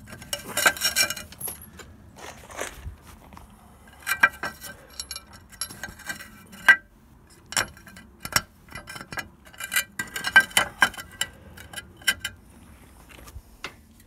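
Clay roof tiles clinking and knocking against each other as they are handled and shifted into place, in scattered clusters of sharp clinks with a short ringing.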